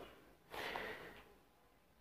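A man's short, faint breath, about half a second in; otherwise near silence.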